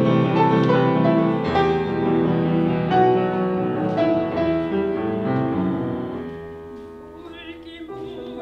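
Piano playing an interlude of a Korean art song, the notes thinning and fading down about six seconds in. A soprano's voice with wide vibrato enters about seven seconds in.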